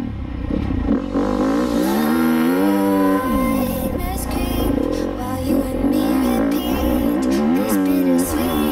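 Off-road motorcycle engine revving under acceleration, its pitch climbing and then dropping several times as it shifts and rolls off, with background music playing alongside.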